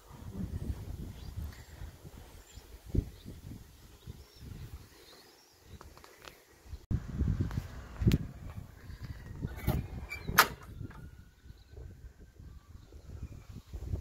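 Hinged aluminium toolbox door on a truck body being shut and opened with its chrome paddle latch: several sharp metallic clicks and knocks, the loudest about ten seconds in, over a low rumble of wind on the microphone.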